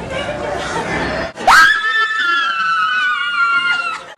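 A woman's high-pitched scream that starts suddenly about a second and a half in, is held for about two seconds while sinking slightly in pitch, then cuts off. Before it there is talk with background noise.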